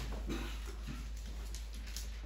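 A quiet stretch: a steady low hum with faint, scattered small handling noises close to a handheld microphone.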